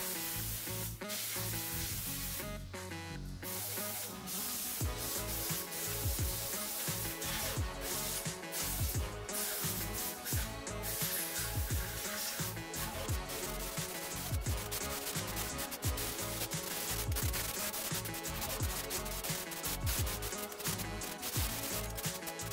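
Compressed-air rustproofing applicator hissing as it sprays anti-rust product onto a car's underbody, with short breaks in the spray near the start. Background music plays under it.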